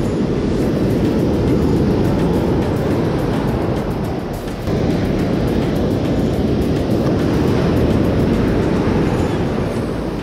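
Loud, steady rumble of breaking surf and wind on the microphone, dipping briefly about four and a half seconds in.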